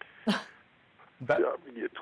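A brief throaty vocal noise about a third of a second in, then a man's speech starting with "Da" past the middle.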